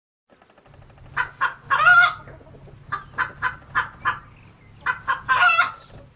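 Chickens clucking: runs of short clucks that twice build into a longer, louder call, the pattern of a hen's cackle. A faint low hum runs underneath.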